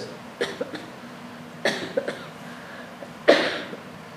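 A person coughing a few times, short and sudden, the loudest cough a little over three seconds in.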